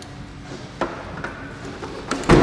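A car's trunk lid being swung down by hand, with a few faint clicks and light knocks from the lid and its hinges, one just under a second in and another a little later.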